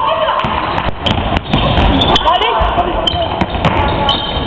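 A basketball being dribbled and bounced on a sports-hall floor during play, struck repeatedly. Indistinct voices of players and spectators call out over it.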